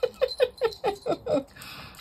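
A woman laughing: a run of about six short bursts of laughter, each falling in pitch, over about a second and a half.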